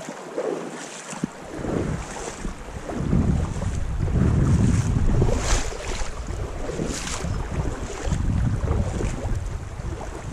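Wind buffeting the microphone in uneven gusts that start about a second in and are strongest through the middle, with two brief sharper sounds about five and seven seconds in.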